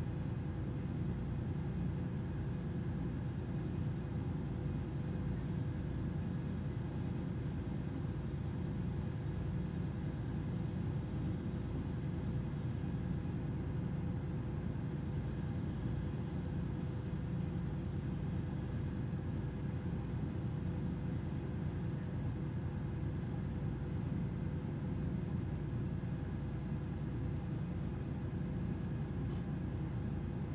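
Steady low hum and rumble of a tanker's onboard machinery, unchanging throughout, with a few constant tones riding over it.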